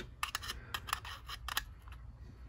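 Light metallic clicks and scrapes as a Beretta Pico's stainless steel slide and recoil spring are handled and fitted back onto the polymer frame during reassembly, about half a dozen faint, irregular clicks.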